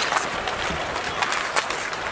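Ice hockey game sound in an arena: a steady crowd noise with skates scraping on the ice and scattered sharp clicks of sticks and puck.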